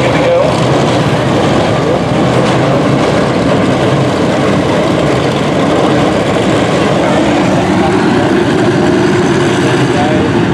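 Dirt-track stock car engines running steadily at low speed under caution, a continuous loud drone from the field circling the track.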